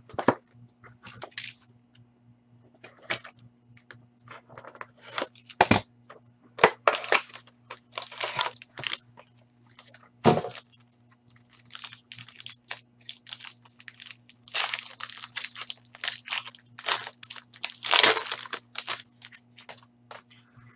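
Clear plastic wrap on a box of hockey cards being torn off and crinkled in the hands, in short irregular crackling bursts. There are two sharp knocks against the box, about six and ten seconds in.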